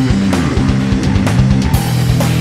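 Ibanez SR500E electric bass played fingerstyle with overdrive, a riff of low held notes over a heavy metal backing track with rapid kick drum hits and cymbals.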